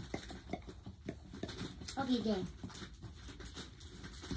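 Light knocks, clicks and rustling from things being handled in a pet cage while it is cleaned.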